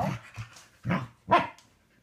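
Pembroke Welsh Corgi barking: a few short barks, the loudest about a second and a half in.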